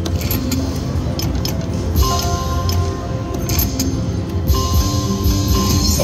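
Video slot machine playing its electronic music and jingling sound effects during a spin as multiplier symbols land, with held electronic tones about two seconds in and again near the end.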